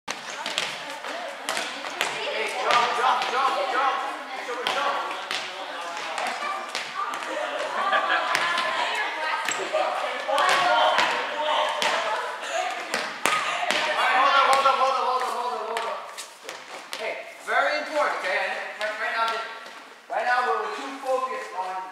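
A volleyball being struck and bouncing off the gym floor, with many sharp smacks at irregular intervals, over the overlapping, unworded chatter and calls of the players.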